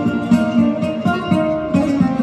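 Flamenco guitar playing a solo passage without singing: a quick run of plucked notes, mostly low and middle strings, with a few chords.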